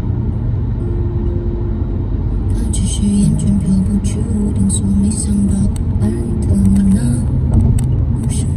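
A sung pop ballad vocal over a steady low car-cabin road rumble while driving on a highway.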